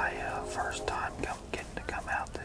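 A man whispering close to the microphone, with short sharp clicks between the words.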